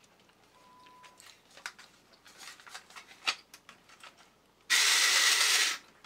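Light clicks and taps of the robot's metal body being handled, then near the end the toy robot's small battery motor and gear train whirring loudly for about a second.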